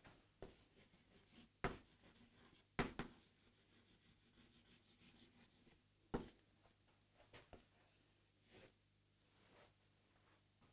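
Chalk writing on a blackboard: a few short, sharp chalk taps and strokes spread through otherwise near silence, the last clear one about six seconds in.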